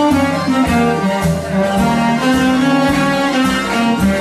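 Cello played with a bow, carrying a melody over a recorded backing track with bass notes and a steady beat.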